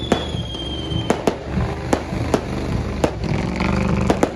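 Fireworks going off: irregular sharp bangs, about two a second, over a continuous low rumble, with a high whistle that falls slightly in pitch and stops about a second in.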